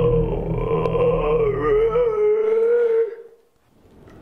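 A long, wavering, howl-like cry held near one pitch for about three seconds, over a low drone that stops a little past two seconds in. It then dies away into near silence.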